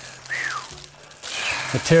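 Plastic wrapping rustling and crinkling as a large-scale model railcar is handled in its bag, with a brief falling tone early on and a spoken word near the end.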